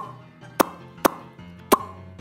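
Four sharp, unevenly spaced clicks or pops over faint background music.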